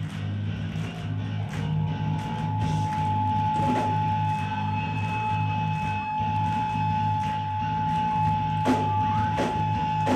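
Hardcore punk band playing live: heavy distorted guitar and bass chords with drums, and a single high note held steadily from about a second and a half in. Near the end, drum hits land evenly, a little more than one a second.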